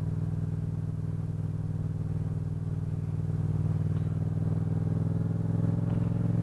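Motorcycle engine running steadily while riding at a constant low speed, a steady low engine note that grows slightly louder over the second half.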